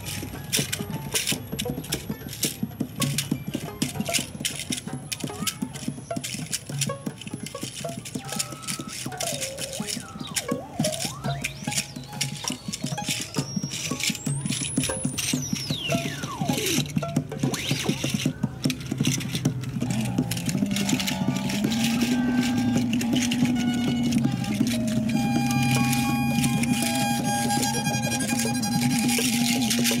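Free improvised ensemble music: violin, clattering hand percussion such as a tambourine, and electronics. In the middle a single pitch sweeps up high and slides back down. In the second half sustained electronic drone tones come in and the music grows louder.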